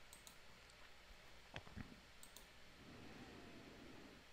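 Near silence, with two faint computer mouse clicks in quick succession about a second and a half in.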